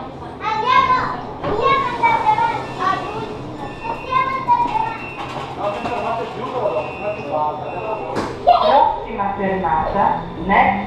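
Children's voices chattering and calling out inside a metro carriage, with a sharp knock about eight seconds in and a low whine beginning to rise near the end.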